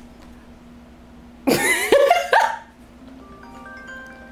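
A short, loud cry with a bending pitch about a second and a half in, lasting about a second. Then soft, chime-like music notes begin.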